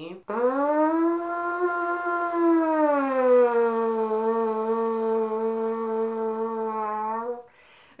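A flugelhorn mouthpiece buzzed on its own with the lips: one long held buzz that rises slightly, then slides down to a lower pitch about three seconds in and holds there until it stops near the end.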